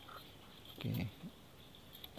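A man's voice saying one short word, 'oke', about a second in, over a quiet steady background hiss. There is a brief faint blip near the start.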